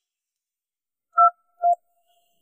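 Two short electronic beeps about half a second apart, the tones of a mobile phone as a call is dialled.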